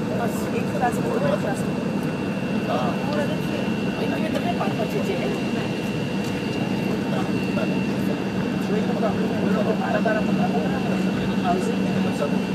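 Embraer 170's General Electric CF34-8E turbofans running at idle thrust as the jet taxis, heard inside the cabin: a steady low hum with a thin high whine over it, and indistinct passenger chatter.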